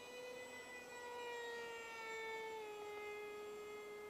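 Electric park jet's brushless motor and 6x4 propeller whining in flight, a faint steady tone that slowly falls in pitch.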